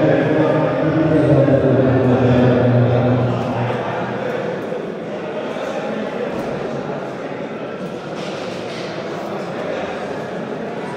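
Men's voices held on a low pitch for the first three and a half seconds, like a group chant or call. Then the indistinct chatter of players and spectators echoes around a gym.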